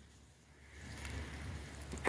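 Faint wind noise on the microphone, a low, even rumble and hiss that starts about half a second in after a moment of near silence.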